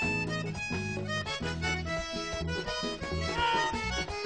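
Live vallenato music: a button accordion plays the melody over a bass line, with no singing.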